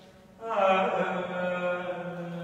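A man chanting a long, held sung vowel in Carnatic style, ringing in a cathedral's long reverberation. The previous note dies away, then a new, louder note comes in about half a second in, bends in pitch as it starts, and is held over a steady low hum.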